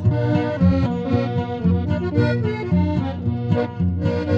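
Norteño corrido music: an accordion plays a fill of short melodic notes between sung lines over a steady, pulsing bass rhythm.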